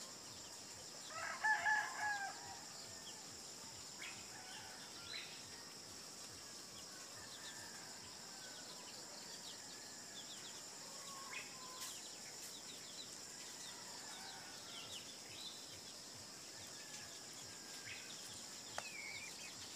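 A rooster crows once about a second in, the loudest sound. Scattered soft clucks and chirps from foraging chickens and birds follow, over a steady high buzz of insects.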